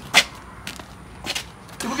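A single sharp plastic clack, then a couple of faint knocks, as a plastic toilet seat is handled and passed from hand to hand.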